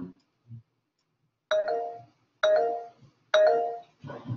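An electronic two-tone chime, like a notification or doorbell sound, sounding three times about a second apart, each note starting sharply and fading out.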